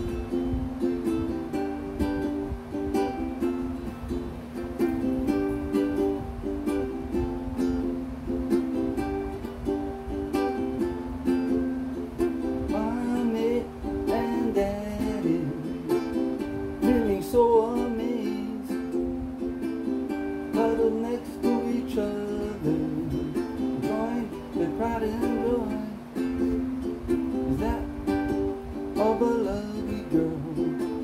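A ukulele being strummed in a steady chord pattern as the opening of a song. From about halfway through, a man's voice hums along over the strumming without clear words.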